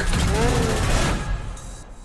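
Film trailer soundtrack: a loud, dense mix of music and sound effects that cuts away about a second in, leaving a quieter stretch.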